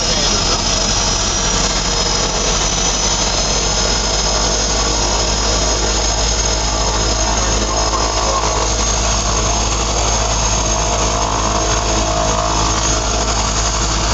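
DHC-6 Twin Otter's Pratt & Whitney Canada PT6A turboprop engine noise heard from inside the cockpit, running steadily after start: a high turbine whine over a constant low drone.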